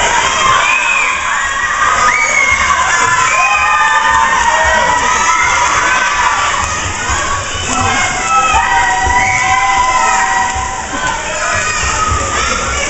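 A crowd of children shouting and cheering on swimmers in a race, many high voices yelling over one another.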